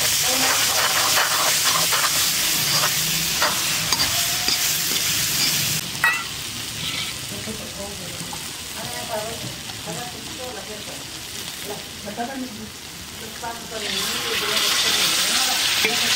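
Spice paste frying and sizzling in a steel kadhai, with a steel ladle scraping and clicking against the pan as it is stirred. The sizzle drops off after a clink about six seconds in, then rises loud again near the end as liquid is added to the hot pan.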